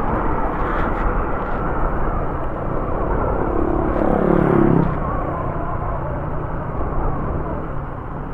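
Honda ADV 150 scooter on the move: its single-cylinder engine running steadily under a heavy rush of wind on the bike-mounted microphone. About four seconds in, a tone falls in pitch over roughly a second.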